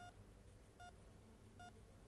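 Near-silent room tone with a faint, short electronic beep sounding twice, about 0.8 seconds apart, part of a steady repeating beep.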